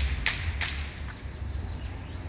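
Outdoor ambience with a steady low rumble and three short hissing bursts in the first second, typical of wind on a handheld phone's microphone.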